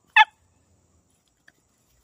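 A small puppy gives one short, sharp, high yip that wavers upward in pitch, excited and eager to get at a fish held out to it.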